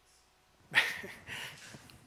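Laughter starting suddenly about three-quarters of a second in, with a loud first burst followed by a few quieter ones.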